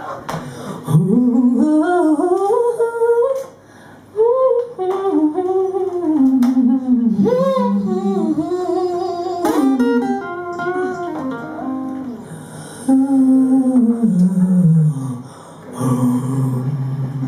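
A single voice humming a slow, wordless melody that glides up and down, over a soft acoustic guitar, with a brief pause about three and a half seconds in.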